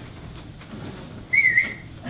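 A brief high whistling tone, wavering slightly, lasting about half a second in the second half.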